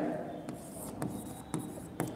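Stylus writing on an interactive display screen: faint scratching with a few light taps of the pen tip on the glass.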